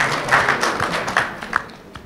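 A few people in an audience clapping: brief, scattered applause that dies away near the end.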